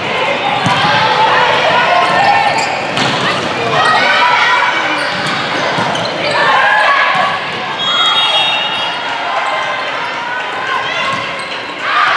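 Gym volleyball rally: many voices of players and spectators shouting and cheering, over the sharp smacks of the ball being played.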